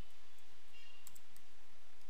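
A few faint computer keyboard key clicks, close together about a second in, over a steady low hiss.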